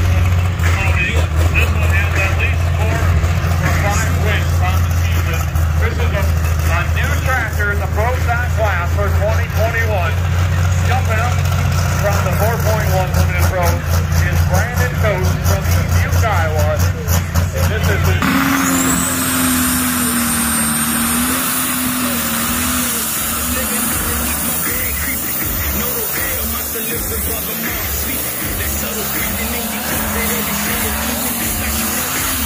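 Engine of a John Deere pulling tractor running hard and steady, with a deep drone. About two thirds of the way in it gives way to a diesel pulling semi truck's engine under load, with a high whine that rises and then holds over it.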